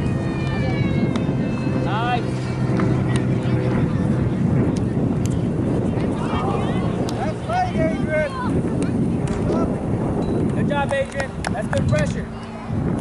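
Players and spectators calling out during a youth soccer game, in short shouts that rise and fall in pitch and come in clusters, over a steady rumble of wind on the microphone.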